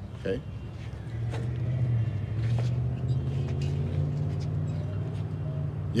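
A motor vehicle's engine running close by, a steady low hum that comes in about a second in and edges slightly up in pitch, with a few light knocks over it.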